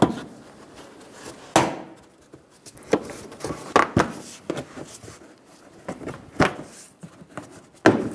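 Plastic wheel-well push clip and inner fender liner being pressed and snapped into place against a car bumper: a string of irregular, sharp plastic clicks and knocks, with handling noise between them.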